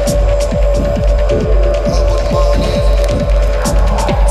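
Electronic dance music from a DJ mix: a fast, even kick-drum beat over a pulsing bass, with a steady droning tone held above it.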